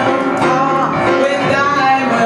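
A woman singing a jazz-blues vocal into a microphone over grand piano accompaniment.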